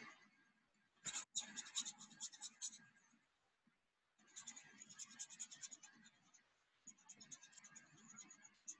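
Faint scratchy rubbing of a paintbrush's bristles working paint on watercolor paper, in three short spells of quick strokes.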